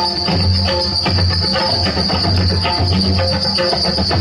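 A live band playing dance music, with drums, keyboard and electric guitar, a steady beat and deep repeating bass pulses. A constant high-pitched tone sits over the music.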